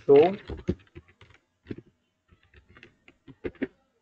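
Typing on a computer keyboard: a string of short, irregular key clicks.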